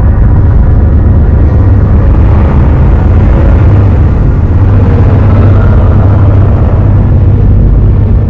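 Loud, steady low rumbling drone of a horror soundtrack, with no clear beat or melody.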